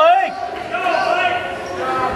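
Coaches and spectators shouting in a gymnasium during a wrestling bout, with a loud drawn-out yell right at the start and quieter voices after it.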